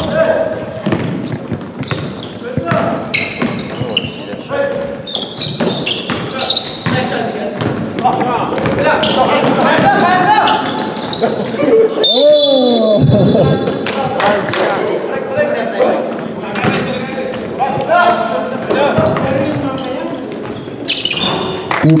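Basketball bouncing and dribbling on a hardwood gym floor during play, amid players' voices, all echoing in a large hall.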